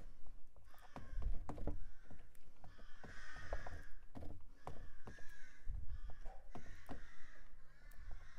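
A crow cawing repeatedly, a harsh call every second or two, with short scrapes and knocks of a squeegee working oil paint and cold wax on a painting board.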